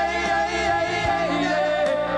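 Live rock band playing, with a voice singing long, wavering held notes over guitar and keyboards.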